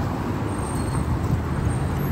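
City street traffic: cars passing close by, a steady low rumble of engines and tyres.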